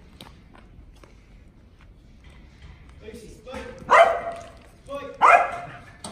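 A kelpie working dog barking: two short, loud barks about four and five seconds in.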